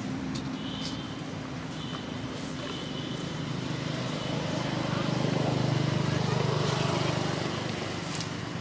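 A road vehicle's engine going past close by, its hum swelling to a peak about five to seven seconds in and then easing off.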